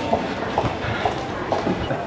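Steady background noise of a railway station concourse, with the rumble of a train and faint distant voices.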